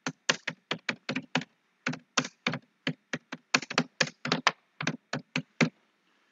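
Typing on a computer keyboard: a quick, uneven run of about two dozen keystrokes as a phrase is typed out, stopping shortly before the end.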